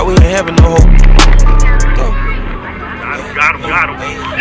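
Hip-hop backing track with a heavy, deep bass that slides down in pitch twice in the first second. The bass fades out about halfway through, leaving a quieter, thinner stretch.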